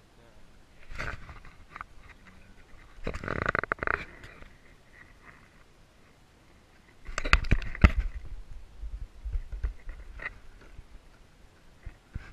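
Wooden beehive boxes and frames being handled: scrapes and knocks of wood on wood, loudest in a cluster of sharp knocks and thuds about seven to eight seconds in.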